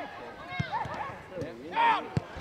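Voices calling out across an outdoor football pitch, with a loud shout of "good" near the end, and two short thuds in between.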